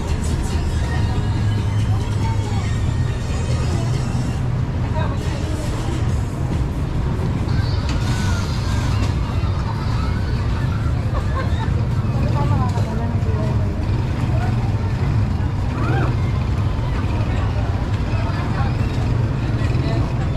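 Busy street ambience: a steady low rumble of street traffic of jeepneys and motorcycle tricycles, with the scattered voices of passers-by.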